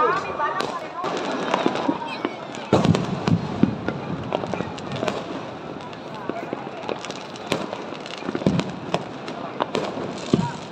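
Fireworks and firecrackers going off in irregular succession, sharp cracks and bangs with a heavier bang about three seconds in, over the voices of a large crowd.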